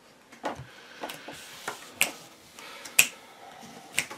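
Playing cards being handled and set down on the tabletop: a string of short, sharp clicks and taps, about six in four seconds, the loudest about two and three seconds in.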